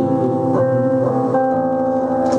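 Solo guitar playing a blues song, strummed chords left to ring, with a new chord struck about every half second to second.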